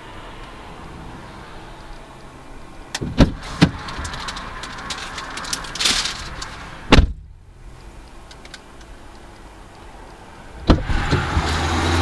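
Clicks and thuds of a parked car's door or power window. Outside noise rises, is cut off abruptly by a thud about seven seconds in, then comes back louder after another click near the end.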